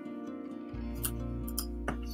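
Quiet background music with sustained, plucked-string notes, the bass note changing about three quarters of a second in; a short click near the end.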